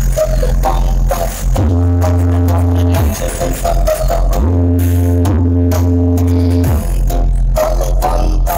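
Loud music played through a giant truck-mounted parade sound system, with deep bass notes held for a second or two that slide up into each note and drop away at its end.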